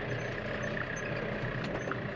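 Tractor engine running at a steady pitch, heard from inside the cab as the tractor drives along.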